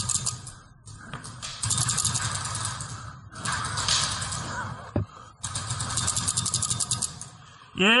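Paintball markers firing in several long, rapid strings of shots, with a single sharp crack about five seconds in.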